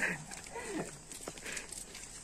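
Footsteps on a paved path, a few faint scuffs and clicks, with faint voices in the background.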